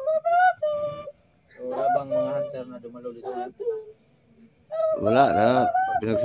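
Crickets chirring in a steady high drone, with a loud, high-pitched wavering voice in the first second and again near the end, and quieter talk in between.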